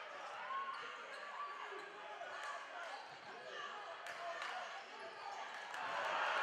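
A basketball bouncing on a hardwood gym floor as it is dribbled, with short squeaks of sneakers on the court and voices in the gym.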